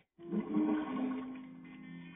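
Cartoon bubble scene-transition sound effect playing through a television speaker: a watery burbling whoosh over a held chord, starting suddenly and fading over about a second and a half.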